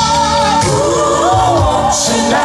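Live R&B band with a female lead vocalist singing a sliding, bending vocal line over bass, keyboards and drums.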